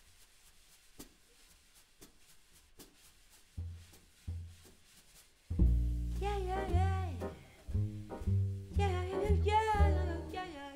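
Live jazz quartet: a quiet stretch of soft, regular taps, two plucked upright-bass notes, then about halfway through the band comes in loudly with walking upright bass, piano chords and a woman's voice singing long notes that bend in pitch.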